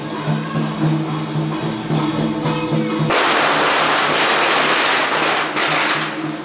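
Procession music with steady pulsing tones. About three seconds in, a string of firecrackers crackles densely for about two and a half seconds, louder than the music, then stops.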